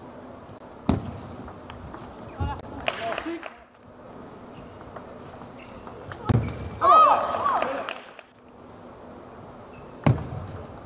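Table tennis play: sharp knocks of the celluloid ball off bats and table, with players' shouts, a short one about three seconds in and a louder, longer one about seven seconds in as a point is won.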